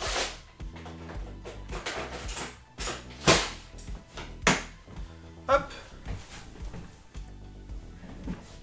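Soft background music with a few sharp knocks or clacks, the loudest about three seconds in and another about a second later.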